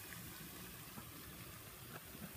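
Faint, steady background hiss with a fluctuating low rumble and a few light clicks; no distinct event stands out.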